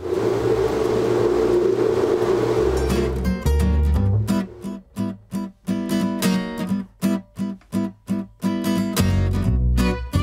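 An electric blender running steadily for about the first three seconds, blending cooked cassava into a purée. Background acoustic guitar music with plucked notes then takes over for the rest.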